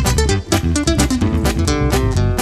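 Instrumental break of a regional Mexican song: acoustic guitars playing quick picked notes over strummed rhythm and an electric bass line, with no vocals.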